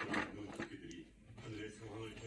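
A person's faint, low, muffled hum, closed-mouthed, starting about halfway through, after a few soft clicks at the start.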